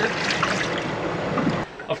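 Water poured from a red plastic cup splashing into a stainless steel sink, a steady splashing that cuts off about one and a half seconds in.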